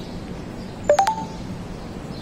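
Three short electronic beeps in quick succession about a second in, each a step higher in pitch, heard over steady street background noise.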